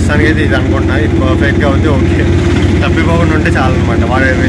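A man talking over the steady engine drone of a road vehicle, heard from inside the vehicle as it drives.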